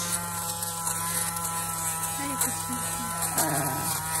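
Electric lint remover (fabric shaver) running with a steady buzzing hum as its rotating blade head is passed over a knitted sweater, shaving off the pills and fuzz.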